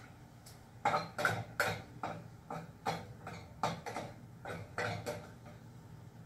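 A series of irregular light knocks and clinks, about a dozen spread over several seconds, from kitchenware being handled on the stove: a utensil and a pot of cooked rice.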